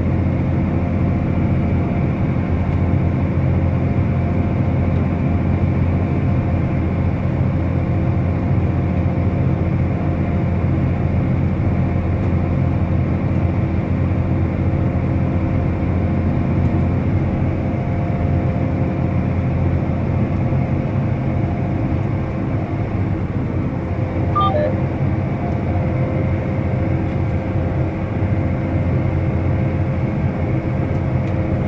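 John Deere tractor's diesel engine running steadily while working a field, heard from inside the closed cab as an even, constant drone.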